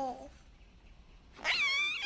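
A baby's voice: a short low coo at the very start, then a loud, high-pitched, warbling baby laugh from about one and a half seconds in.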